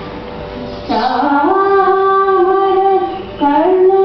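A woman singing a Carnatic melody in long held notes with sliding ornaments, over a steady drone. The voice is soft at first, slides up into a held note about a second in, and slides up again into another held note near the end.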